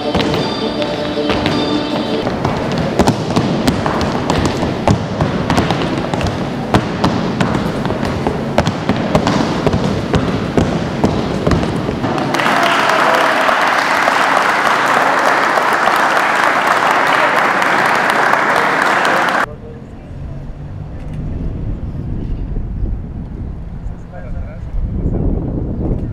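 Jalisco folk dance music with the dancers' zapateado heel stamps on a tiled floor; the music's held notes drop out about two seconds in while quick stamps go on. From about twelve seconds in the audience applauds, and the applause cuts off suddenly near the end.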